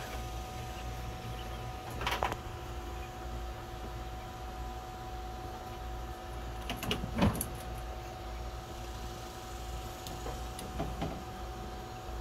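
Steady hum of a small USB-powered fan running, with a few light knocks from the plastic grid lid and PVC pipe frame of the hutch being handled, the loudest about seven seconds in.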